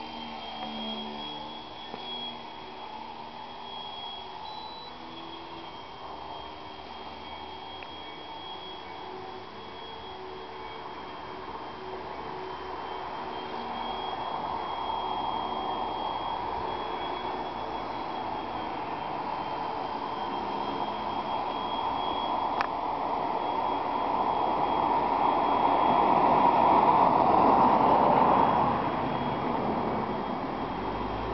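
Electric motor and propeller of a small foam RC model plane in flight: a steady high whine over a rushing noise that swells through the second half and falls away shortly before the end. A single sharp click comes about two-thirds of the way through.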